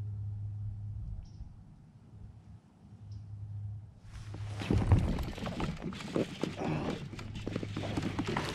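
A low steady hum, then about halfway through a sudden onset of water splashing and sloshing with many sharp crackles, as a hooked largemouth bass thrashes at the surface beside the kayak.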